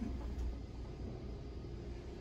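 Kone elevator car descending, heard from inside the cab as a steady low rumble of travel.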